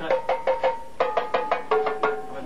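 Marimba played with four mallets: quick rhythmic strikes, several a second, mostly two- or three-note chords that ring briefly, with a short gap just before the one-second mark.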